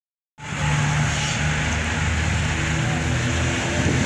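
A motor vehicle's engine idling close by, a steady low hum that starts about half a second in.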